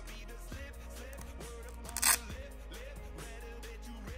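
Background music, with one short ripping sound about two seconds in: the goalkeeper glove's hook-and-loop wrist strap being pulled open.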